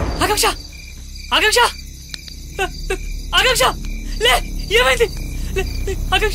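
A person's short wordless vocal sounds, about half a dozen in a row, each rising and falling in pitch, over steady cricket chirping.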